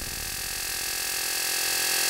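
A noise passage in an IDM electronic track: a steady, static-like hiss with faint held tones, the bass and beat dropped out, slowly getting louder.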